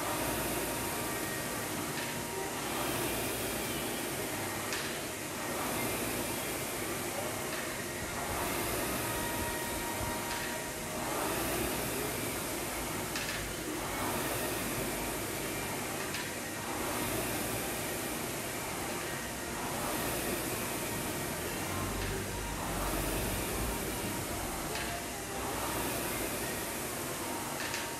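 Air rowing machine's fan flywheel whooshing under hard strokes, swelling and easing about every two and a half to three seconds, with a light click at many of the strokes.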